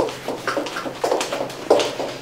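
Footsteps on a hard floor, a person walking at about two steps a second.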